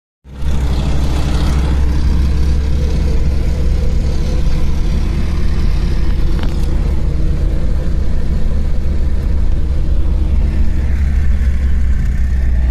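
A car being driven, heard from inside the cabin: a steady low engine and road rumble that cuts in suddenly just after the start and holds even.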